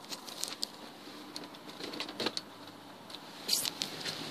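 Scattered light clicks from the electronic gear shifter of a 2014 Chrysler 300 being handled, over a faint steady hum in the car's cabin, with a short cluster of taps near the end.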